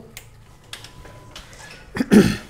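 A few faint, scattered clicks as the motorcycle's ignition is switched on.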